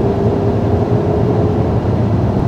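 Peugeot 5008's 1.2-litre three-cylinder turbo petrol engine pulling under throttle up a hill, heard inside the cabin over tyre and road noise: a steady, even hum as the car gains speed.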